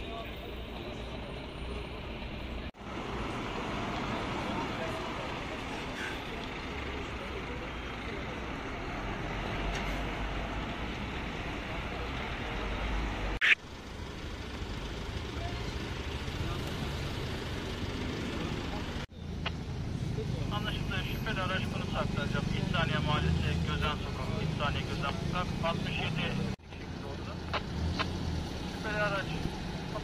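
Roadside scene noise: a vehicle engine running with indistinct voices, changing abruptly several times as the sound jumps from one take to the next, with one sharp click about halfway through.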